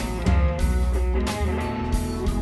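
Live blues band playing an instrumental passage: electric guitar lead over bass and drums, with drum hits at the start and about a second in.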